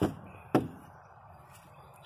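Two sharp knocks about half a second apart, from handling around the open driver's door of a 1983 Chevy van.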